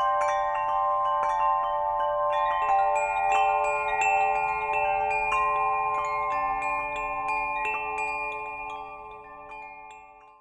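Wind bells ringing: a stream of small metal bells struck at irregular moments, their clear high notes overlapping and ringing on. The ringing fades away near the end.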